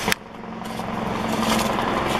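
A sharp click right at the start, then road-vehicle noise of engine and tyres growing steadily louder as a vehicle approaches.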